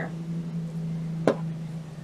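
A small tin box handled as a written note is put into it: one sharp click a little past the middle, over a low steady hum.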